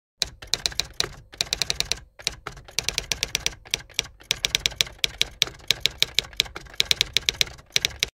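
Typewriter key-clack sound effect: runs of rapid keystrokes, several a second, broken by brief pauses, as text is typed out on screen. It cuts off abruptly at the end.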